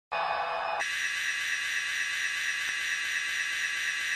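A processed intro sound opening a rap track. A brief lower, muffled burst switches less than a second in to a steady, high hiss-like wash with held tones in it.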